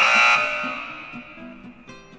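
A cartoon 'wrong answer' buzzer sound effect, sounding once and fading out over about a second and a half, marking the crossed-out label as rejected. Light background music plays underneath.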